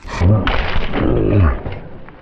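A man's loud shout, then a long yell falling in pitch, as a mountain biker crashes into the dirt, over the rough noise of the riding.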